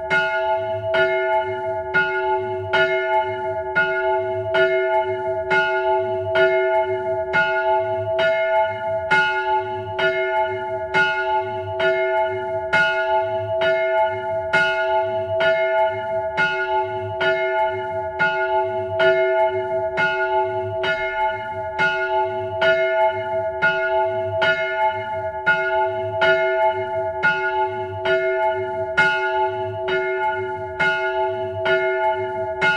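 Bronze church bell cast by Cornelius Ammeroy in 1597, 601 mm across and tuned to F-sharp, swinging and struck by its clapper in an even run of strokes about once a second, each stroke ringing on into the next.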